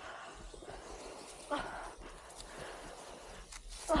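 A short groan from a person about a second and a half in, over a steady hiss.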